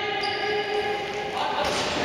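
A basketball bouncing as a player dribbles on an indoor court, with one long held shout from a spectator over it.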